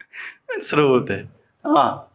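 A man's voice talking, with a quick breathy intake near the start and a short laugh about a second in.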